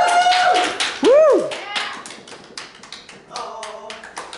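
A small group of guests clapping and cheering, with a long high "woo" held through the first half-second and a short rising-and-falling whoop about a second in; the clapping carries on more softly after that.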